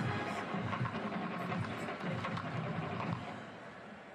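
Stadium crowd noise with music playing under it, steady, fading a little near the end.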